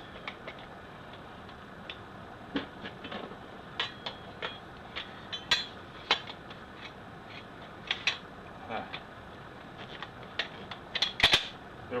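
Light metal clicks and clacks of a Tomahawk pump shotgun being put back together by hand, as the fore end and barrel are worked onto the receiver. The clicks come at irregular intervals, with two sharper clacks about eleven seconds in as the parts go home.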